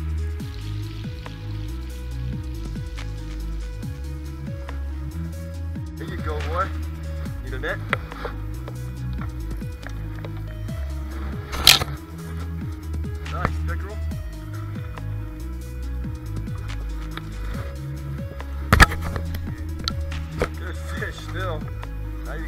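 Background music with a bass line changing note by note, and voices at times underneath. Two sharp knocks stand out, one about halfway through and another a few seconds later.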